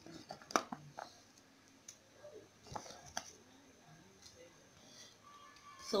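Quiet kitchen handling sounds beside a boiling pot: a few sharp clicks and knocks, the clearest about half a second in and again near three seconds in.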